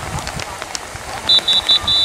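Referee's whistle blown three times in short blasts, about a second in, then once in a longer blast near the end.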